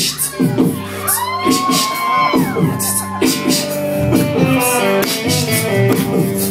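Live rock band playing a heavy, steady beat with bass, drums and guitar, and a long sliding, wavering note, vocal or instrumental, over it about a second in.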